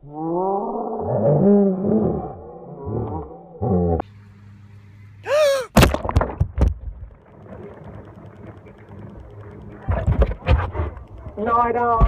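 Excited shouting and yelling voices, then a high scream about five seconds in. A run of sharp knocks and rubbing follows, close against the phone's microphone, with more knocks near the end.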